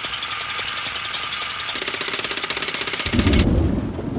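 Sound effect of a crane's winch working: a fast, steady mechanical ratcheting clatter, joined by a low hum about halfway through, then a heavy low thud just after three seconds as the rattling stops.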